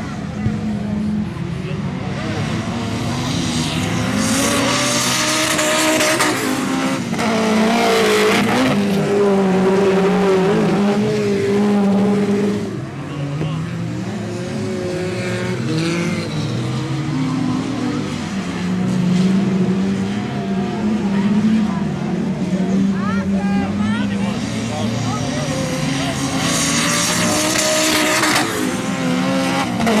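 Several standard-class autocross cars racing on a dirt track, engines revving up and down as they accelerate and lift off. Cars pass louder and closer around four to eight seconds in and again near the end.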